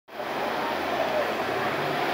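2008 New Flyer D60LF articulated diesel bus idling at a stop, a steady engine hum and hiss.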